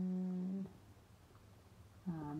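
A woman's short closed-mouth hum, "mmm", held on one flat pitch for just under a second.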